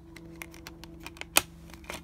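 Plastic clicks and ticks from a Blu-ray disc being handled on the hub of its clear plastic keep case: a run of light irregular clicks, with one sharp snap about one and a half seconds in and another near the end.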